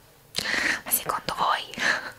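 A woman's soft whispered voice close to the microphone. It starts about a third of a second in and comes in short, breathy, unpitched pieces.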